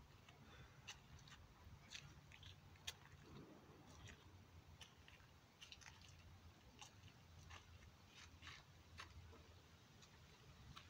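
Faint, irregular crunches and clicks of shoes stepping on dry leaves and concrete, over a faint low hum.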